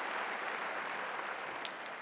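Large arena audience applauding, slowly dying down.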